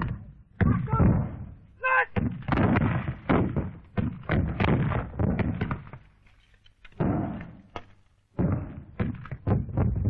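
Battle noise on an old film soundtrack: a rapid, irregular run of gunshots and shell bursts. There is a brief cry about two seconds in, and the firing breaks off twice in the second half before starting again.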